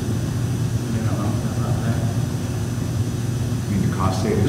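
Steady low hum of a large hall, with faint murmured voices about a second in.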